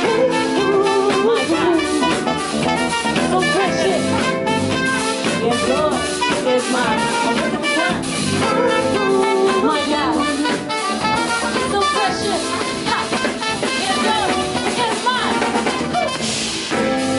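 Live band playing an upbeat instrumental passage: trumpet lines over a drum kit.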